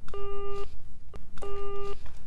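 Telephone busy signal beeping twice, each steady tone lasting about half a second: the call has been dropped.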